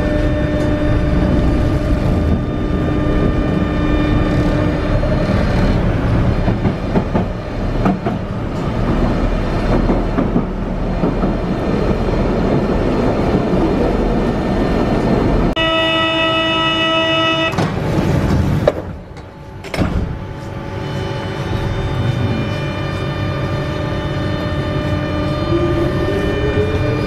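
Paris Metro Line 7 train heard from inside the carriage, its running noise and steady electric motor whine continuing throughout, with the whine rising in pitch near the end. Just past the middle a horn sounds once for about two seconds, and soon after the running noise briefly drops away.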